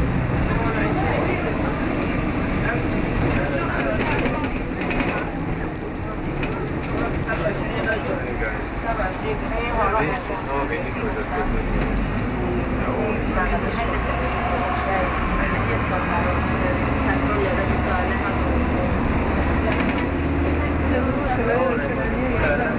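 Double-decker bus's diesel engine running, heard from inside on the upper deck as a steady low rumble that grows heavier for several seconds in the second half, under indistinct passenger chatter.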